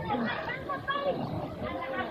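Overlapping chatter of several young voices talking and calling out at once.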